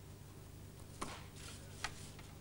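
Quiet room tone with a steady low hum, broken by two faint, sharp clicks, one about a second in and a slightly sharper one near the end.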